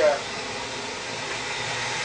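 Steady, even rush of air from the running blowers of a glycol bed bug heat-treatment system.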